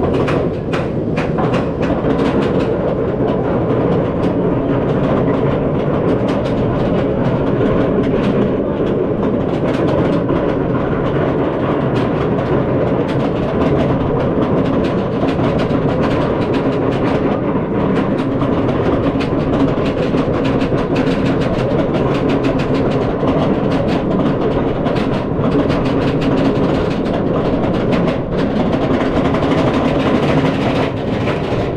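Bolliger & Mabillard dive coaster train climbing its chain lift hill: the lift chain runs with a steady, loud clatter, with sharp clicks all through it, thicker at the start and near the end.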